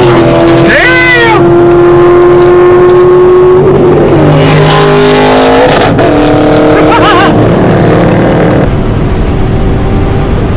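Loud noise of a C6 Corvette's V8 heard from inside the cabin at highway speed, with music over it: long held notes that bend up and down and change pitch in steps.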